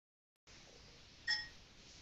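A single short electronic chime, a Google Hangouts app tone as the broadcast starts, about a second in and fading quickly over faint hiss.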